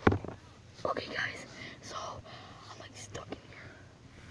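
A person whispering under their breath, with a sharp knock right at the start.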